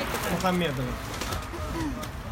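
A woman's voice making drawn-out, cooing 'ooh'-like sounds: a few notes of about half a second each, rising and falling in pitch, with hardly any words.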